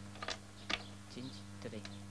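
Backgammon dice and checkers clicking on the board as a game is played: a few sharp, separate clicks at uneven intervals.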